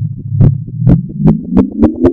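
Reversed, slowed and pitch-processed logo-animation sound effect: a low droning tone starts suddenly, with sharp beats that speed up from about two a second to several a second while the tone's pitch climbs.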